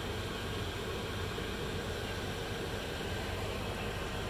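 Steady low hum and hiss of background noise, with no distinct event.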